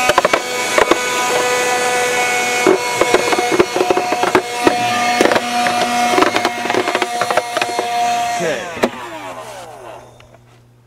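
Vacuum cleaner running with a steady whine while debris rattles and clicks up the nozzle, then switched off about eight and a half seconds in, its motor winding down with a falling whine.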